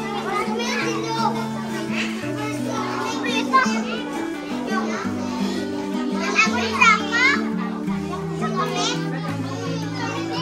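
Chatter and calls from a crowd of young children, with a few louder children's calls about six to seven seconds in, over background music of slow, held notes.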